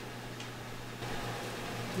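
Quiet room tone: a steady low hum under a faint hiss, with one faint tick about half a second in.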